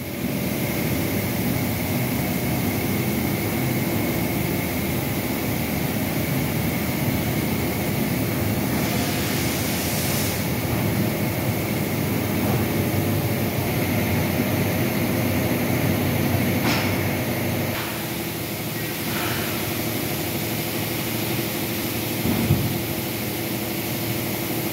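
Wood-grain heat-transfer sublimation machine for aluminium profiles running: a steady mechanical hum and whine from its motors and fans. A couple of brief knocks come in the second half, and the drone eases slightly about three quarters of the way through.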